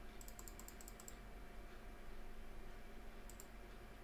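Faint clicking at a computer: a quick run of about ten clicks in the first second, then a couple more a little after three seconds, over a low steady hum.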